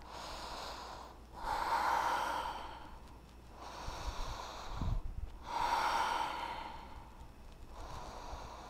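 A woman's slow, steady breathing, close to the microphone: two long breaths about four seconds apart, with quieter breath in between. A soft low thump comes near the middle.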